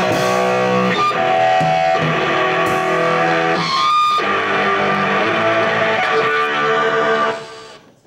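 Amplified electric guitars holding ringing notes at a loud level, with a brief sweeping sound about halfway through; the sound dies away shortly before the end.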